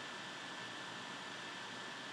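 Low, steady background hiss of the recording with a faint high steady tone running through it; no clicks or other events.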